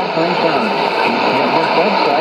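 Speech from a shortwave AM broadcast on 9475 kHz, played through the speaker of a Sony ICF-2001D receiver, under a steady hiss of static. The words are hard to make out.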